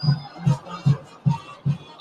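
Music with a steady low beat, about two and a half beats a second.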